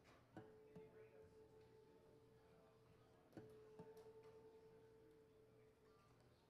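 Faint acoustic guitar string, plucked softly in two pairs about three seconds apart, each time a single clear note that rings on while the string is being tuned at its peg.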